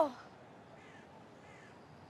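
The end of a woman's tearful, wavering voice, falling in pitch and fading out just after the start, followed by faint background quiet.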